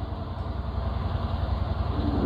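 A steady low hum with a faint hiss behind it.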